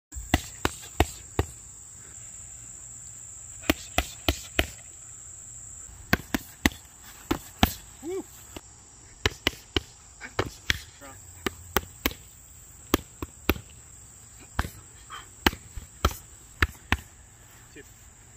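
Boxing gloves slapping into focus mitts in quick combinations of two to five sharp punches with short pauses between, over a steady high insect drone.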